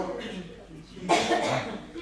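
A cough, loudest about a second in, with indistinct talk around it.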